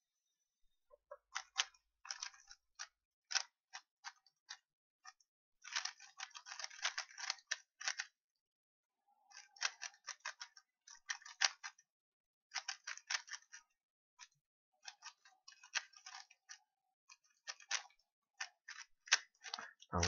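A 3x3 speedcube being turned fast by hand during a timed solve: rapid runs of plastic clicks as the layers turn, in bursts broken by short pauses of a second or so.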